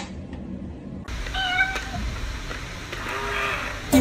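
A cat meowing: one steady-pitched meow lasting about half a second, about a second and a half in, and a fainter, lower call near the end. A single click is heard at the very start.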